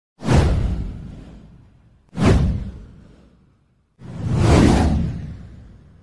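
Three whoosh sound effects for an animated title intro, about two seconds apart, each fading away over a second or two. The first two start suddenly; the third swells up more gradually before fading.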